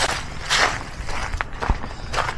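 Footsteps of a person walking outdoors, a few uneven steps, the firmest about half a second in, with two sharp short knocks in the second half.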